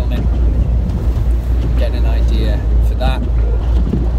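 Steady low rumble of a car driving, heard from inside the cabin, with a few words of a man's speech about halfway through.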